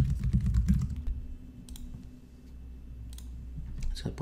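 Typing on a computer keyboard: a quick run of keystrokes in the first second, then a few scattered key clicks.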